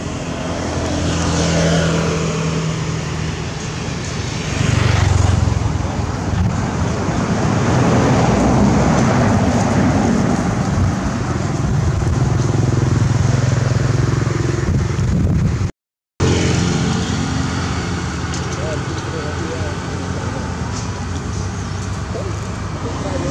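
Motor vehicle engines running on a nearby road, with a steady low hum that swells as a vehicle passes about five seconds in. The sound cuts out abruptly for a moment about two-thirds of the way through.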